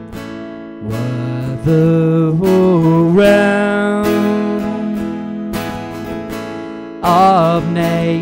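Acoustic guitar strummed in a steady rhythm, with a man's voice singing over it in long, held notes.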